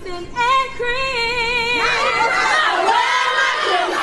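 Women's voices singing: a single voice holds a note with vibrato, and about two seconds in several voices join together in a group song.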